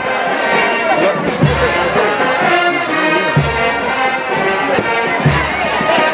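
Brass-band dance music playing loud, with a low drum hit about every two seconds.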